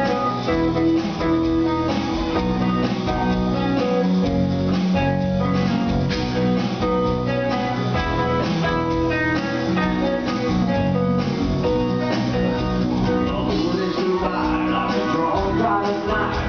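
Live rock band playing a loud, steady instrumental passage led by electric guitar over drums and keyboards.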